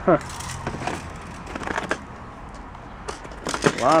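Small plastic handheld games and their packaging clicking and rustling as they are handled, with a few short vocal sounds; the loudest, right at the start, drops quickly in pitch.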